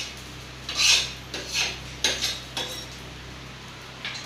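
A metal utensil scraping and clinking against steel kitchenware in about four short strokes, the loudest about a second in.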